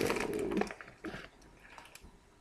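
A stiff dog food bag rustling and crinkling as it is picked up and tilted by hand. It is loudest in the first half second, then a few faint crackles follow.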